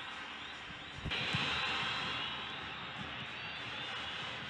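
Stadium crowd noise from a football match broadcast: a steady wash of noise that grows suddenly louder about a second in and then slowly eases back.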